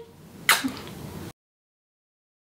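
A woman blowing a kiss: one short, breathy kiss smack about half a second in.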